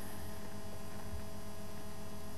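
A steady electrical hum with faint hiss: the recording's background noise during a pause in speech.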